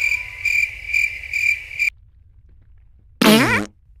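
Cartoon cricket-chirp sound effect: a single high chirp repeating about twice a second for two seconds, the stock gag for an awkward silence. After a pause, a short loud voice slides down in pitch near the end.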